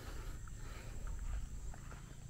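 Open-field ambience: a steady low rumble on the microphone, with a faint steady high-pitched hum and scattered short, faint chirps.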